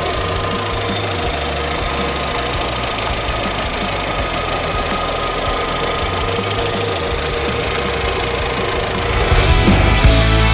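Volkswagen Gol's four-cylinder engine idling steadily, recorded close to the open engine bay. Rock music comes back in near the end.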